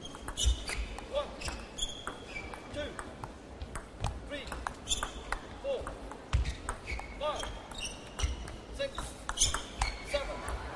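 Table tennis rally: the ball clicking sharply off the paddles and the table several times a second, with short squeaks of shoes on the court floor in between.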